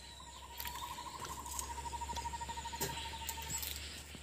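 A wild animal's rapid trilling call: an even, fast train of pulses at one steady pitch, starting about half a second in and stopping shortly before the end, with a few sharp ticks scattered through it.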